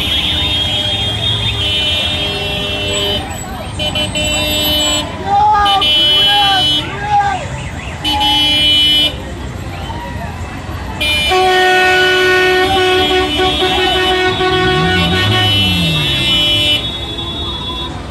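Several vehicle horns honking at once in long held blasts, the longest lasting about five seconds from about eleven seconds in, with people's voices calling out in between.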